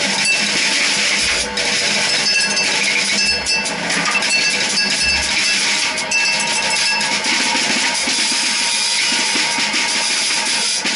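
Free-improvised duo of a semi-hollow electric guitar and a drum kit: a dense wash of cymbals and metallic drum hits over picked guitar notes, with three low bass-drum thumps in the first half.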